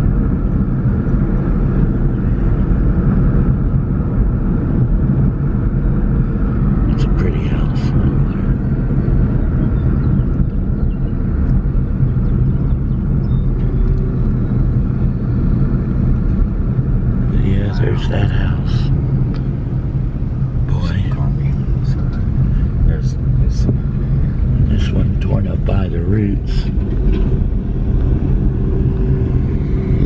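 Car driving on a paved road, heard from inside the cabin: a steady low engine and road drone. A few brief clicks and knocks come over it, mostly in the second half.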